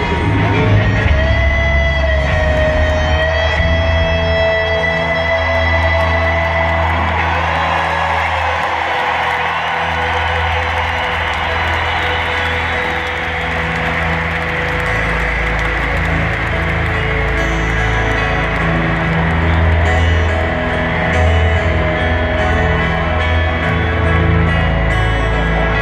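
Live rock band playing an instrumental passage, with a lead electric guitar holding long notes over bass and keyboards, heard through the stadium's sound system from the stands. The crowd is audible underneath, strongest around the middle.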